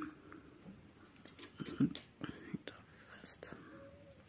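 Faint, scattered clicks of metal knitting needles and rustle of yarn as the first row of knit stitches is worked, with soft whisper-like voice sounds.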